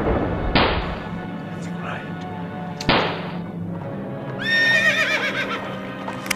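Battle sound effects over a steady music bed: two sharp bangs, about half a second and three seconds in, then a horse whinnying for about a second near the end.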